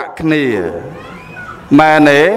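A man speaking Khmer in a sermon: a long syllable that slides down in pitch, a short lull, then more speech near the end.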